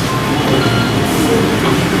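Steady loud rumble of room noise in a busy meeting hall, with indistinct voices underneath, growing slowly louder.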